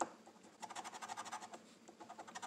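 A metal scratcher coin is scraping the silver coating off a lottery scratch-off ticket in quick back-and-forth strokes, about a dozen a second. The scraping comes in two runs with a brief pause near the middle.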